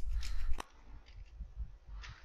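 Computer keyboard keys clicking as a command is typed, over a low hum. The hiss drops away suddenly about two-thirds of a second in, and fainter key clicks go on after.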